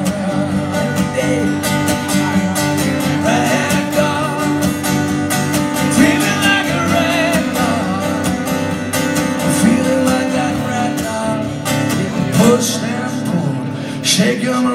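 Acoustic guitar strummed in a steady rhythm through an instrumental passage of a live solo song, with a wavering melodic line over the chords at times.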